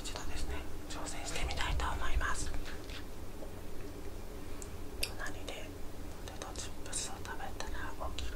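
A person whispering close to the microphone in short breathy bursts, with a pause in the middle, over a faint steady low hum.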